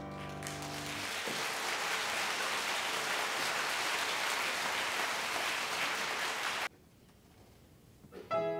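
Audience applause at the end of a choral song, over the last fading piano chord in the first second. The clapping cuts off suddenly a little over a second before the end, leaving near silence.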